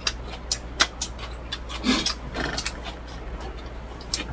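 Close-up eating sounds: lettuce being chewed and chopsticks clicking against plates and bowls, with scattered sharp clicks and a louder burst about two seconds in, over a steady low hum.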